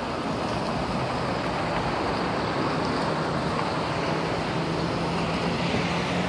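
Steady road traffic noise as cars and a minibus drive through a roundabout, over a low, steady engine hum.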